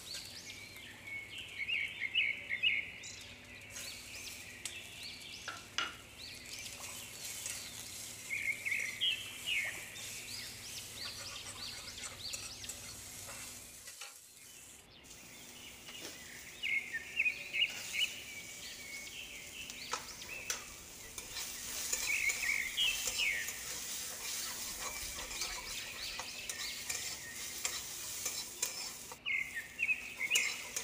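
A steel spatula scraping and stirring around an iron kadhai in quick runs of strokes every few seconds, over the sizzle of chopped onions, garlic and green chillies frying. The sound breaks off briefly about halfway.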